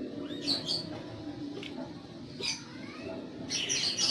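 Birds chirping in the background: a few short, high chirps about half a second in, again around two and a half seconds, and a quicker cluster near the end, over a faint low steady hum.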